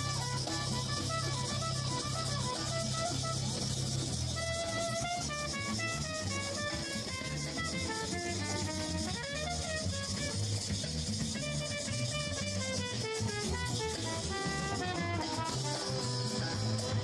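Live brass band playing: trumpet and saxophone melody over a drum kit and bass line.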